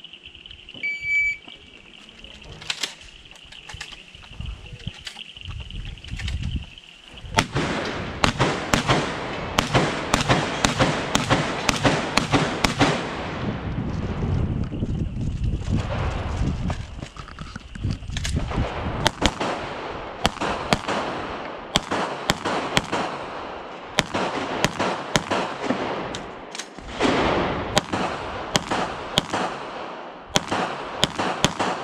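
Shot timer beep about a second in, then semi-automatic pistol shots fired in quick strings of sharp cracks, with a lull partway through as the shooter moves between firing positions.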